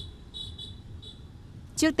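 A high insect trill, cricket-like, that breaks off briefly and then fades out about a second in, over a faint low outdoor rumble.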